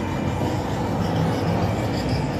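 Steady rush of city traffic noise, with a low rumble underneath and no single event standing out.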